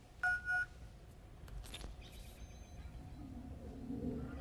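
Futuristic telephone handset giving a short electronic beep about a quarter second in, followed by a few faint clicks and a brief high tone, like keys being pressed to dial.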